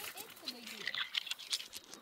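Water splashing and dripping from a hand rinsing small quartz crystals in a shallow stream, with irregular light clicks as the stones knock together.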